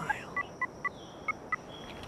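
Mobile phone keypad beeps as keys are pressed while typing a text message: about six short two-tone beeps at uneven intervals.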